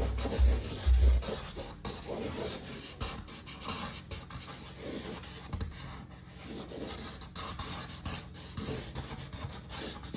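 Chisel-tip marker scratching across drawing paper in quick, irregular looping strokes. A couple of low thumps come in the first second.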